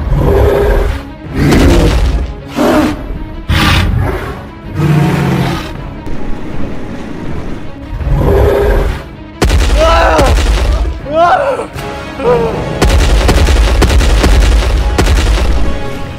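Dramatic action-film soundtrack with a series of loud booming hits. Voices cry out with rising and falling pitch about two-thirds through, followed by a long, loud rumbling stretch near the end.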